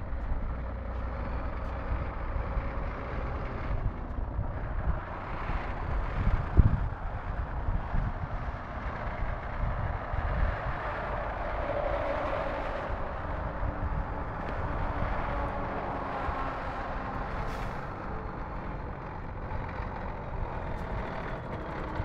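Tanker truck's diesel engine running as the truck moves slowly across the lot: a steady rumble with one sharp knock about six and a half seconds in.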